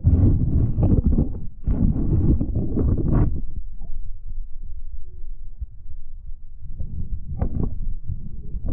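Muffled water sloshing and rumbling around a submerged camera as a rainbow trout swims off beside it. Loud low surges for the first three seconds, quieter in the middle, and surging again near the end.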